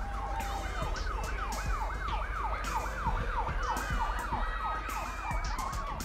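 Siren-like whooping: a rapid series of falling wails, about three a second, over a low steady rumble.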